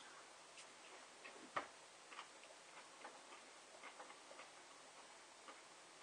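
Near silence with faint, irregular mouth clicks from two people biting into and chewing fresh chili peppers, one click a little louder about one and a half seconds in.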